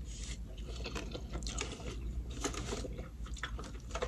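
A person biting into and chewing a mouthful of burrito, heard close up as an irregular run of small wet clicks and crunches.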